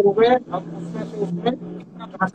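A man's voice speaks briefly at the start, then a few short vocal sounds over a steady low hum.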